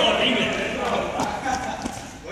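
Players' voices calling out over running footsteps on a hard sports-hall floor, with a few sharp footfalls in the second half.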